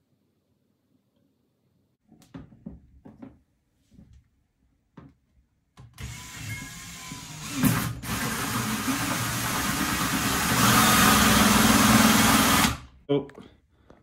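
A few light clicks and knocks, then a cordless drill with a hole saw runs for about seven seconds, cutting through a plastic storage-bin lid. It grows louder over the last couple of seconds and stops suddenly.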